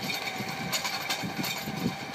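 Tractor engine running steadily under load as it drives a rear-mounted spading machine digging deep through the soil, with irregular clicks and knocks over a steady noise.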